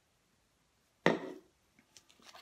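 A single sharp knock on the tabletop about a second in, dying away within half a second, followed by a few faint clicks.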